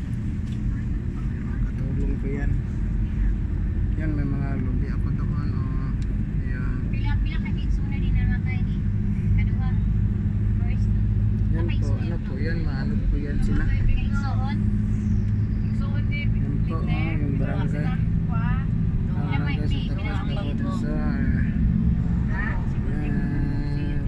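Steady engine drone and road noise of a moving road vehicle, with people's voices talking over it for much of the time.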